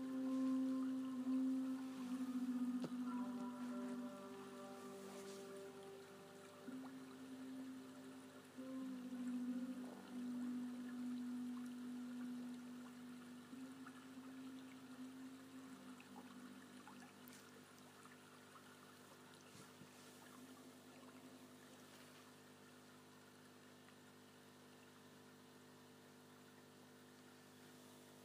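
A low sustained musical tone, swelling and easing several times, that fades over the second half to a faint steady hum.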